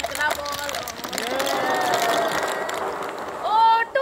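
Plastic ping pong balls pouring out of a container and clicking and clattering as they bounce off hands and the ground, busiest in the first second and a half. Voices shout and call over it, and clear speech comes near the end.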